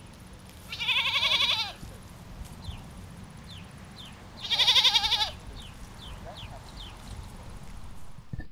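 Two loud, quavering bleats from a small mixed flock of goats and sheep: the first about a second in, the second about halfway through, each lasting roughly a second.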